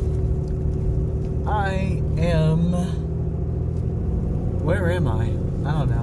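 Steady engine and road noise inside the cab of a truck moving on the highway: a low rumble with a faint steady hum above it.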